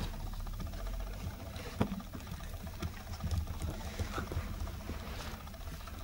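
Toy poodle puppies moving about on a carpet mat: soft pattering of paws and rustling, with a few light taps, one about two seconds in and another about four seconds in.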